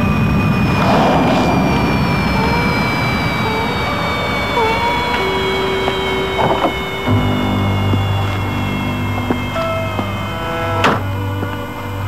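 Eerie film score with a slowly falling high tone and short scattered notes. Under it a low rumble gives way about seven seconds in to a steady low drone. A sharp click a little before the end fits a car door shutting.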